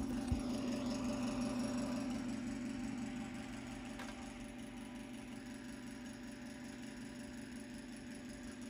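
Steady low mechanical hum of room machinery, easing off a little after about three seconds, with a couple of light clicks.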